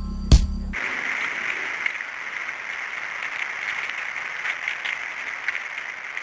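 A chiming music cue ends on a sharp hit and cuts off abruptly in the first second. A steady hiss of tape-like static with small crackles follows, matching the glitchy end title.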